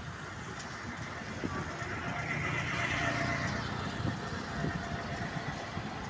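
Road traffic: a motor vehicle passing by, its noise swelling to a peak about three seconds in and then fading.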